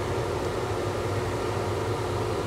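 Steady blower noise with a low hum from a laminar flow hood's fan.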